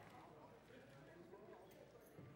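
Very faint, indistinct voices in the background, with a few light clicks or knocks.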